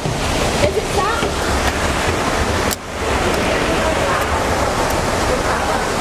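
Steady rushing of falling water, dipping briefly about three seconds in.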